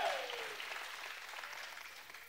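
Congregation applauding after a shouted line of the sermon, the clapping dying away over about two seconds.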